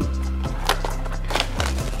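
Background music with a steady low bass, with a few sharp clicks and knocks from a cardboard trading-card blaster box being handled.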